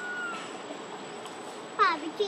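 A baby macaque gives one short, high-pitched call near the end, falling in pitch.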